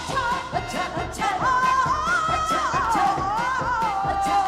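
Live Korean traditional-fusion band music: a woman sings long, wavering notes that slide between pitches, over drums and plucked Korean zithers.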